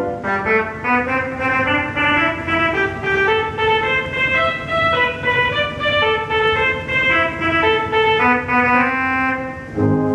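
Two-manual pipe organ playing a march: chords pulsing about twice a second, mostly in the upper register, with lower notes coming back in near the end.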